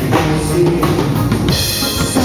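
Live band playing a moderate reggae groove, with the drum kit to the fore: bass drum, snare and rim strokes over bass and chords. The high end turns brighter about one and a half seconds in.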